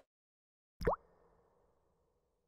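A single short pop with a quickly rising pitch about a second in, fading out in a soft reverberant tail: a logo-reveal sound effect.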